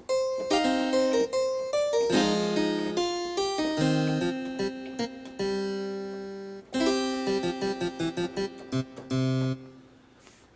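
Yamaha Piaggero NP-V80 digital piano playing its harpsichord voice on its own, with no second layered voice, because the voice change has cleared the dual-voice setting. It plays a run of notes and chords, stops briefly about two-thirds of the way through, then plays a second phrase.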